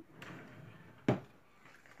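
A small cardboard medicine box being handled, with a faint rustle and then a single sharp click about a second in.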